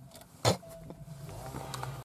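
A single sharp knock about half a second in, then a steady low hum inside the car cabin.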